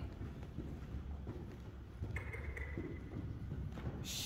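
Hoofbeats of a young Korean Warmblood colt running loose on the sand footing of an indoor arena.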